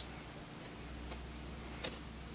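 A sharp click as a CR2032 coin cell is dropped into the battery holder of a small PCB badge, then a fainter click near the end, over a low steady hum.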